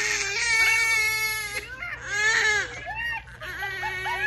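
Newborn baby crying: one long, high wail through the first second and a half, then a shorter cry about two seconds in.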